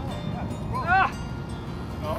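A man's short exclamation about a second in, over a steady low rush of wind and choppy water.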